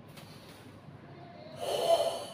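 A karateka's forceful breath in Sanchin kata: a short, loud rush of air that builds in the last half second as he sets into his stance.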